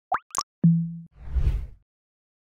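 Logo-animation sound effects: two quick rising plops, a short steady low hum, then a low whoosh that swells and fades out.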